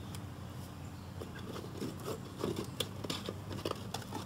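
Faint scattered taps and rustles of hands setting felt story pieces on cloth and handling a story box, over a low steady hum.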